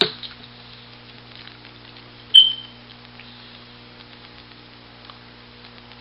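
Steady low electrical hum with a hiss underneath. A single short, high-pitched beep sounds about two and a half seconds in and fades quickly.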